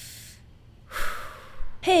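A person's breathing: a breathy exhale fading out, then a sudden sharp intake of breath about a second in.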